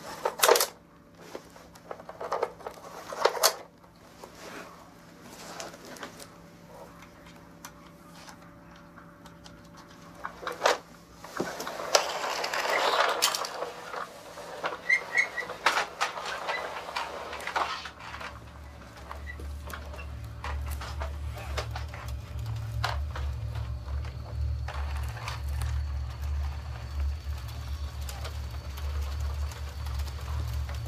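Toy trucks being handled and knocked about on a floor: scattered sharp clacks and rattles, busiest in the middle. From about two-thirds of the way in, a low steady hum sets in underneath.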